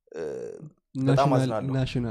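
A man's voice speaking in a conversation: a short phrase, a brief gap, then a longer phrase about a second in.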